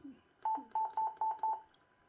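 Yaesu FT-450D transceiver's key beep: five short beeps at one steady pitch, about four a second, as its DSP/SEL selector knob is clicked step by step through the DSP functions.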